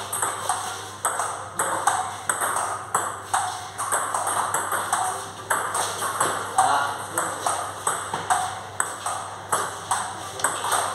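Table tennis rally: the ball clicks off the bats and the table in steady alternation, about two to three hits a second, each hit ringing briefly in the hall.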